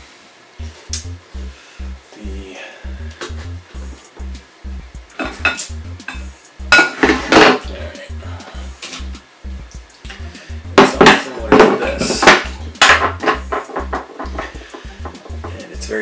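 Dishes and utensils clattering on a tabletop as they are handled, in bunches of sharp knocks loudest about seven seconds in and again from about eleven to thirteen seconds, over background music with a steady beat.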